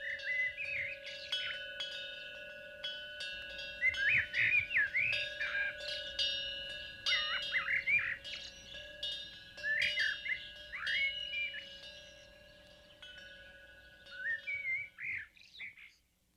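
Birds chirping in short, quick up-and-down calls over the sustained ringing of chimes, with light tinkling strikes throughout; both fade and stop shortly before the end.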